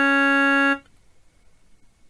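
Electronic keyboard set to a harmonium tone, one sustained reedy note held and released about a second in, then near silence.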